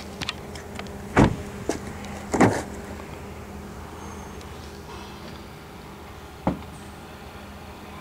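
Thumps and knocks from the doors and cabin of a 2010 Kia Forte being handled as someone gets into the back: a loud thump about a second in, another a second later, and a sharp knock near the end, over a faint steady low hum.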